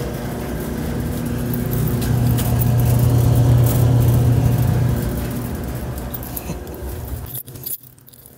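Clothes dryer running: a steady electric motor and blower hum that grows louder over the first few seconds and then fades, with light clinking over it. It cuts off abruptly near the end.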